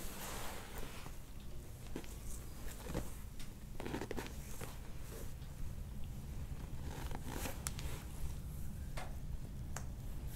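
Soft rubbing and rustling of hands kneading the neck and upper trapezius muscles through skin and a cotton shirt, with scattered small clicks over a steady low hum.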